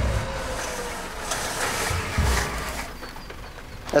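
Winch pulling the Isuzu D-MAX up over a rock-step ledge while its engine runs in neutral, so the tail shaft is not spun against the rock. A faint steady whine sags slightly in pitch, with a few low thumps.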